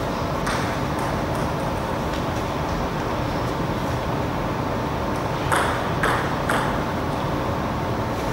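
A table tennis ball bounced three times, about half a second apart, with sharp clicks over a steady background hum.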